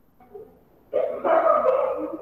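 A dog barking, starting about a second in, loud and in quick succession.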